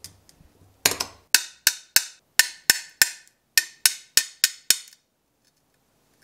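Brass ball end of a Toyo glass cutter tapping the underside of a score line in textured amber stained glass, about a dozen sharp taps at roughly three a second, to run the score so the glass breaks along the curve. The tapping stops a second before the end.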